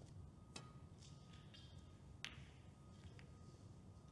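Two faint, sharp clicks of snooker balls, about a second and a half apart, the second louder, over near-silent hall tone.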